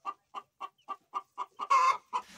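Young caged chickens clucking in a steady, even series of short calls, about four a second, with one louder, longer call near the end.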